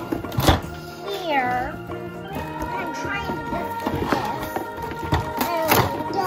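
Background music with a melody, over cardboard toy packaging being handled, with two sharp knocks: one about half a second in and one near the end.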